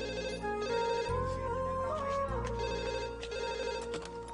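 A landline telephone ringing in repeated bursts over soft background film music.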